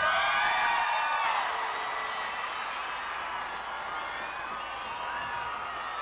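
Studio audience applause and cheering with scattered shouts and whoops, right after the performance music cuts off. It dies down gradually over the first few seconds, then holds at a lower level.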